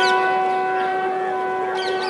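Bugle call sounding one long, steady held note as the border flags are lowered.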